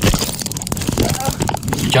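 A taser going off again after its probes were already fired: a fast electric clicking, many clicks a second, through the struggle.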